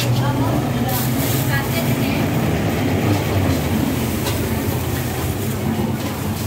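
Busy market ambience: scattered voices over a steady low hum, with a couple of short knocks about a second in.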